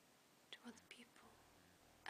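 Near silence, with a few faint whispered voice sounds about halfway through.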